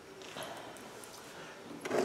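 Quiet room with faint handling noise, light rustles and a few small clicks, as a small potted bonsai is turned and its branches touched by hand; a man's voice starts right at the end.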